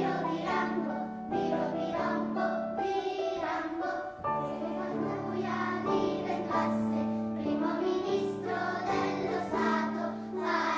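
Young children's choir singing a song together, with piano accompaniment.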